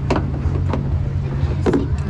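Monster truck's big engine idling with a steady low rumble, with a few sharp clicks over it.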